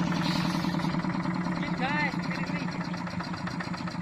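Small single-cylinder diesel engine of a two-wheel hand tractor running steadily with a fast, even beat, working a flooded rice paddy. A brief high call rises and falls over it about two seconds in.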